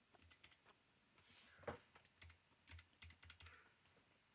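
Faint computer keyboard typing: irregular, scattered keystrokes in small clusters.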